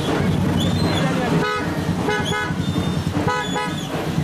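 A horn tooting in short, quick blasts, in two or three bursts, over the dense low noise of a street procession.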